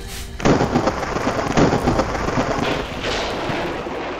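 An edited-in rushing, crackling noise effect that starts abruptly about half a second in and eases off near the end.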